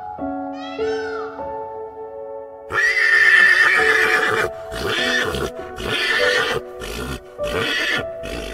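A horse whinnies loudly about three seconds in, then gives several shorter neighs in quick succession, over background piano music. A short arching call is heard near the start.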